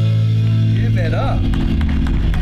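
A rock band's held final chord, bass and electric guitar through the PA, ringing out and fading. About a second in, voices start calling out over it.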